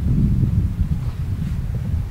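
Wind buffeting the microphone: an uneven low rumble with no clear pitch, fairly loud.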